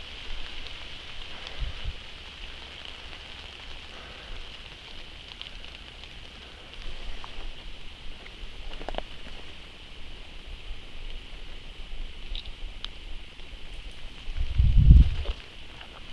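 Light rain pattering on forest leaves, with scattered drop ticks over a steady high hiss. A brief low rumble on the microphone near the end is the loudest moment.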